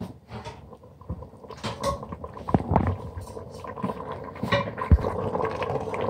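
Steel ladle stirring and scraping through simmering mutton karahi in an aluminium pot, with irregular clinks and knocks against the pot. A steady hum joins in about a second and a half in.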